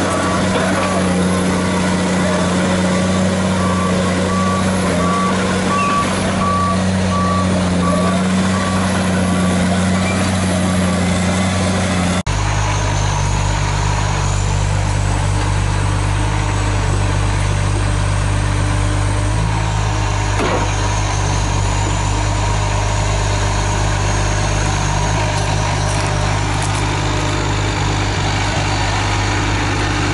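Tigercat L830C tracked feller buncher's diesel engine running as the machine travels, with its travel alarm beeping in an even rhythm until about ten seconds in. After a sudden cut a couple of seconds later, the engine runs steadily at close range.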